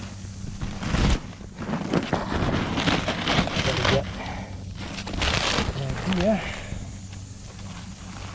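Papery envelope of a bald-faced hornet nest crackling and rustling as a gloved hand pulls its layers apart, in bursts from about a second in to four seconds, and again around five seconds in.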